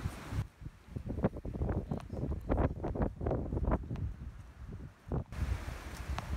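Wind buffeting the microphone with a low, uneven rumble, mixed with rustling and a scatter of short soft knocks.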